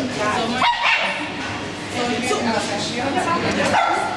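A dog barking and whining, with people talking over it.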